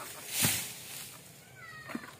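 Long-pole harvesting sickle (egrek) pulled against an oil palm frond: a short rasping cutting stroke about half a second in. Near the end there is a brief high squeak whose pitch bends.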